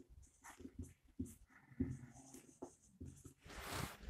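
Marker pen squeaking and scratching on a whiteboard in short, faint strokes as words are written, followed near the end by a brief rising hiss.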